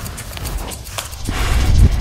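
Trailer sound design: a few sharp clicks and knocks, then a deep rumble swelling up from about a second and a half in.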